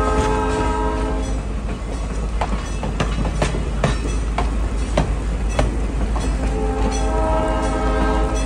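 Passenger cars rolling past, their wheels clicking over the rail joints in a steady clickety-clack. A train horn sounds a long steady chord that ends about a second in, then sounds again about a second and a half before the end.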